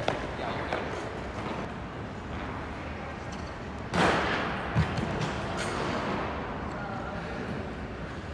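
Figure skates gliding and stroking on rink ice. About four seconds in there is a loud, rough burst of a skate blade scraping the ice on a quad lutz jump, and under a second later a low thud on the ice.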